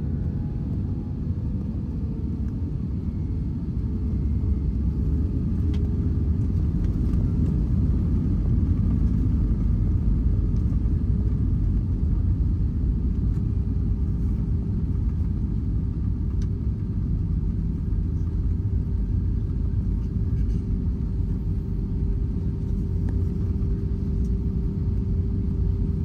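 Cabin rumble of an Airbus A320-family airliner landing and rolling out on the runway, heard from a window seat over the wing: a loud, steady low rumble with a steady engine hum. It grows somewhat louder a few seconds in, then holds.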